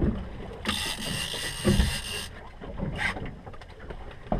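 Fishing reel working under the load of a big fish on a bent rod: a ratcheting, whirring reel sound. A louder high hiss lasts about a second and a half near the start, over a low rumble of wind and water.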